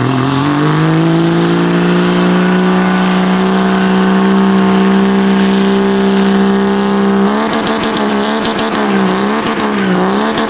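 Pickup truck doing a burnout. The engine revs climb in the first second and are held high and steady while the tires spin. About seven seconds in, the revs start bouncing up and down with crackling. The engine is said to already have a cracked block and is being pushed regardless.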